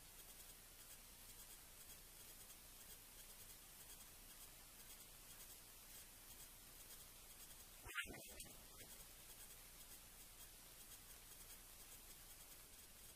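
Near silence with faint hiss, broken once about eight seconds in by a single brief click.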